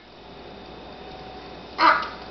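A baby gives one short, loud squeal near the end; before it there is only quiet room sound.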